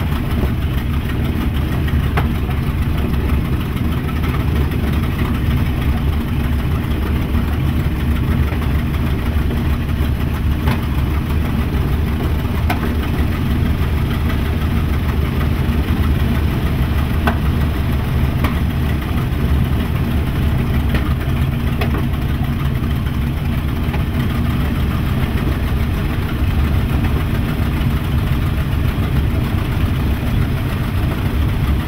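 The B-25 Mitchell's twin Wright R-2600 radial engines running at low power while the bomber taxis, heard from inside the cockpit as a steady, low-pitched engine sound.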